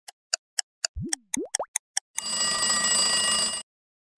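Clock-tick timer sound effect at about four ticks a second. About a second in, three quick rising cartoon-style sweeps play over it, and then a steady electronic buzzer sounds for about a second and a half before cutting off sharply: the time-up signal ending the activity countdown.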